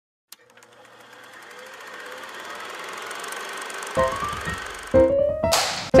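Intro jingle music: a hiss that swells for about four seconds, then a short run of rising keyboard-like notes, with a brief burst of noise just before the end.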